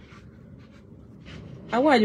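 A pause in a woman's talk: steady low background noise with a few faint soft rustles, then her voice starts speaking again near the end.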